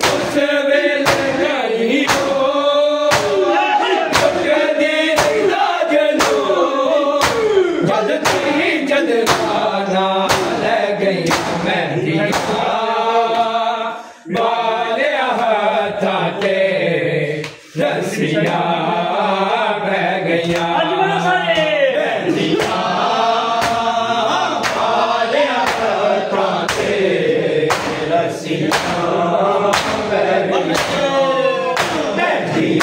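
A group of men chanting a mourning lament (noha) together, over a steady rhythm of open hands slapping bare chests (matam). The chanting breaks off briefly twice, about halfway through.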